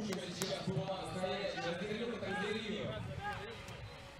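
Faint background voices and shouts at an outdoor beach soccer ground, with a brief sharp click shortly after the start.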